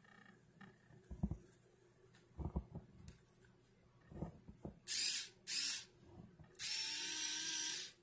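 Neiko 10577A 3.6 V cordless electric screwdriver's motor whirring in two short bursts and then one longer run of about a second, running on the charge it came with out of the box. A few light handling clicks come before it.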